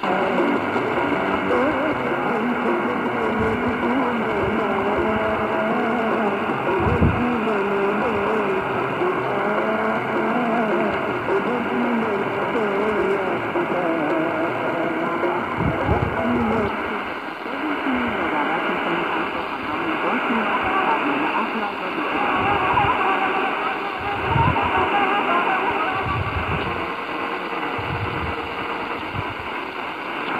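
Medium-wave AM broadcast stations playing through the speaker of a Tecsun PL-450 portable radio: speech and music over static, with the sound cut off above about 4 kHz. The station changes about halfway through as the set is tuned down the band.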